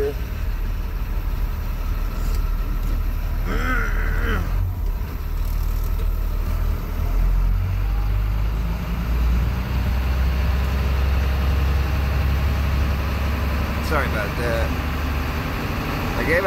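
Engine of a big GMC truck running as it drives, heard from inside the cab as a steady low rumble that grows stronger partway through.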